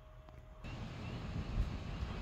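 Faint room tone with a light steady hum, then about two-thirds of a second in the sound cuts to a louder low rumbling noise, like wind or handling on the microphone.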